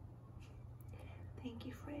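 A woman whispering softly, turning into quiet spoken words near the end.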